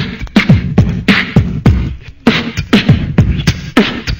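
Beatboxing: a voice making a steady rhythm of mouth-made kick-drum thumps and hissy snare sounds.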